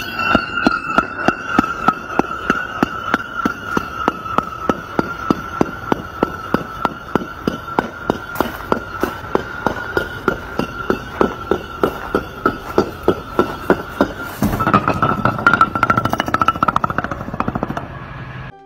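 A long row of concrete blocks toppling like dominoes, each block knocking into the next in an even run of clacks, about three or four a second. The clacks merge into a denser, louder clatter for the last few seconds.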